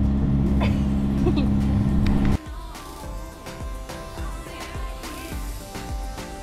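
A sailing yacht's inboard engine running with a steady drone under a short laugh, then an abrupt cut about two and a half seconds in to quieter background music with a steady beat.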